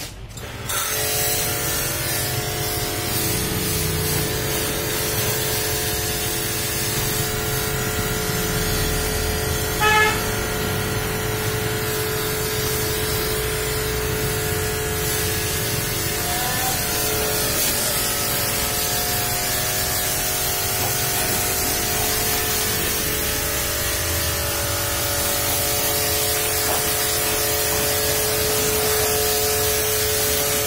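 Pressure washer running steadily, its motor and pump giving a steady hum under the hiss of the water jet spraying the vehicle's body. About ten seconds in there is one short, loud burst.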